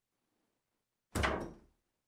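A wooden door being pushed shut, closing with a single thud about a second in.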